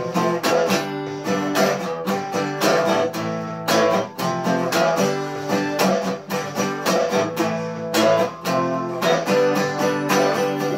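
Electro-acoustic guitar strummed in a steady rhythm, an instrumental break with no singing.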